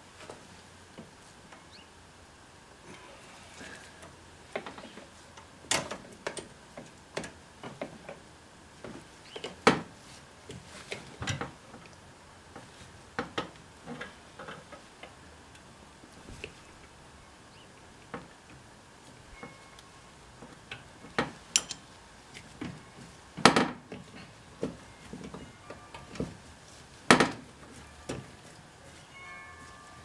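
Irregular sharp metallic clicks and taps from hand tools working a brake-line fitting at the master cylinder, about a dozen of them with long gaps, the loudest a little before halfway and twice near the end.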